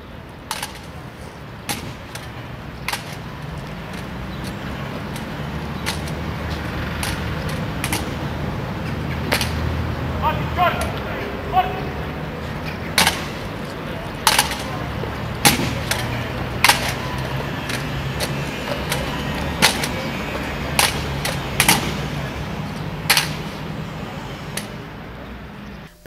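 Military rifle drill: sharp clacks of hands slapping rifles and rifle butts striking the ground, coming about once a second, over a steady hum of outdoor crowd noise.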